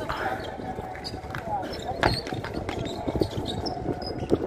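Outdoor pickup basketball: a basketball bouncing and knocking on a concrete court, with the sharpest knock about two seconds in, over players' voices.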